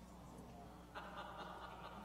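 Near silence: the room tone of a hall with a faint steady low hum. About a second in, a faint steady high tone joins it.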